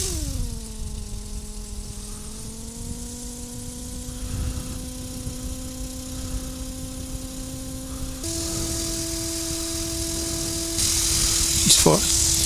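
Quik flexwing microlight trike's engine running: its pitch drops quickly in the first second as the revs settle to a steady idle, then steps up about eight seconds in as the revs are raised. A louder rushing noise joins near the end.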